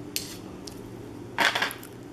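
Clip-on phone lens being unscrewed from its plastic clip base: a few light plastic clicks, then a short louder scrape about a second and a half in.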